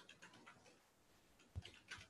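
Faint, irregular light clicks and taps, with a soft low thump about one and a half seconds in.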